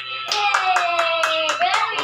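Quick rhythmic claps, about five a second, with one held voice note that slowly falls in pitch over them.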